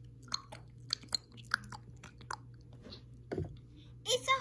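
Small toys being handled close to the microphone: a string of irregular small clicks and soft rustles, with a duller thump about three seconds in.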